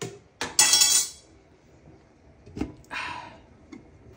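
Aluminium stockpot and its lid being handled and the lid set on: a couple of sharp knocks, then a bright metallic clatter lasting about half a second in the first second, with a single knock and a brief scrape near the end.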